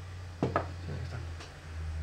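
Handling noise: two sharp knocks about half a second in, then a few fainter clicks, over a low steady hum.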